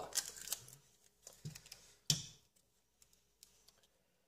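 Light clicks and clinks of a hard drive's metal parts being handled by hand: several in the first second and a half, a sharper click about two seconds in, then a few faint ticks.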